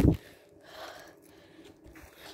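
Handling noise on a handheld phone's microphone: a brief low thump right at the start, then faint rustling.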